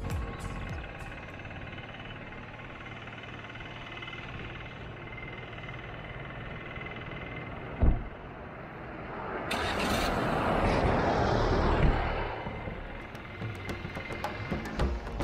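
A single car-door thump about eight seconds in, then a Maruti Suzuki WagonR hatchback pulling away and driving past close by, its engine and tyre noise swelling for a couple of seconds and fading. Faint background music plays underneath.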